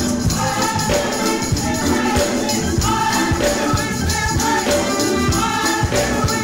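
Gospel choir singing, with percussion keeping a steady beat.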